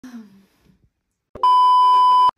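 Colour-bars test-tone beep as a video sound effect: a single loud, steady, high-pitched tone that starts sharply about one and a half seconds in.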